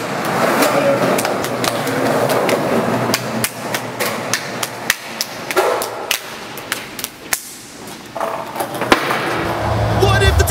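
Hands slapping and clapping together in a quick, irregular series of sharp smacks: an elaborate handshake routine, over a steady hiss. The slaps thin out and get quieter near the end.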